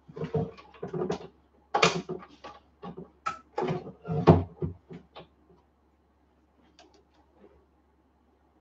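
Knocks and clatter of hands working at the top of a plastic drawer rack: a quick run of sharp knocks over about five seconds, then it stops.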